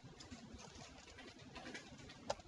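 Near silence with faint, scattered keyboard clicks as code is typed on a computer keyboard.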